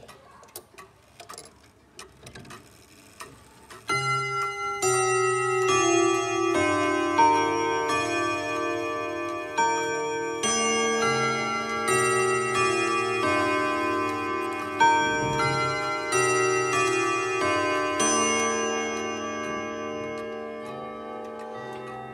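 Junghans wall clock chiming a melody on its ten gong rods at the quarter hour. Hammers strike the rods note after note from about four seconds in, and the notes overlap and ring on with a long sustain, fading slowly near the end. Faint clicks come before the chime starts.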